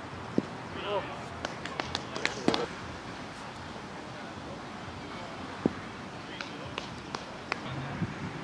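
Sharp, hollow knocks of a plastic wiffle ball hitting the backstop and strike-zone target, one about half a second in and another near six seconds in, with lighter clicks and taps between, over players' voices calling across the field.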